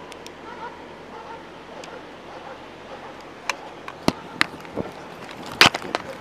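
Irregular sharp knocks and clatter of gear against a police body-worn camera as the wearer starts moving, over a steady low hiss; the knocks begin about halfway through and the loudest comes near the end.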